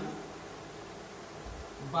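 Steady background hum and hiss with no distinct events, between a man's phrases: his voice trails off at the very start and starts again just before the end.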